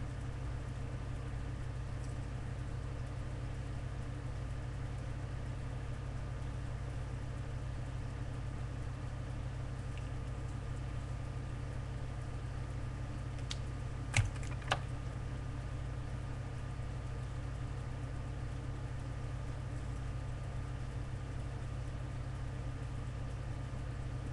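Steady low background hum with faint constant tones above it, and two short sharp clicks about halfway through, half a second apart.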